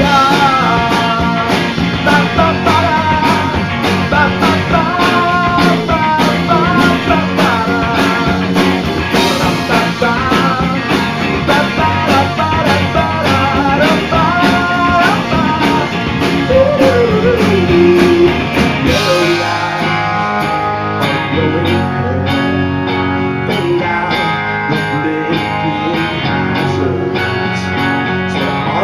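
Live rock band playing: two electric guitars and a drum kit, with sung vocals over the band. About two-thirds of the way through, the music drops to a quieter, sparser section.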